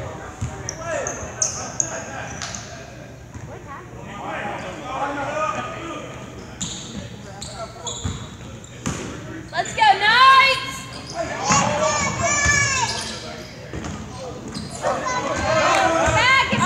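Basketball bouncing on a gym's hardwood floor during a game, with voices echoing in the large hall. From about ten seconds in come loud high-pitched sounds that slide up and down.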